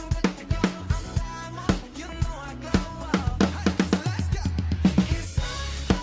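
Roland V-Drums electronic drum kit, its kick, snare and cymbal sounds coming from a TD-27 module, playing a pop beat over the song's backing track. About three and a half seconds in, a fast run of drum hits forms a fill, and a cymbal wash follows near the end.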